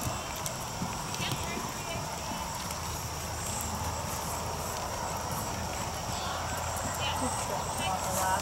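A horse's hoofbeats at the trot on the sand footing of a dressage arena, with faint voices in the background.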